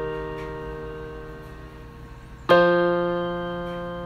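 Background music of slow piano chords. A chord rings and fades over the first couple of seconds, and a new chord is struck about two and a half seconds in and left to ring.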